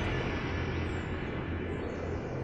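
A low, steady drone under a slowly fading hiss: the decaying tail of a deep cinematic hit in the background score.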